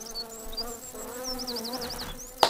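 A bumblebee buzzing in flight, a steady low buzz that wavers slightly in pitch, from the anime's soundtrack. Rows of short high chirps sound over it.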